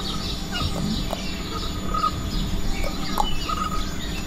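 Birds chirping, with many short calls over a steady low hum.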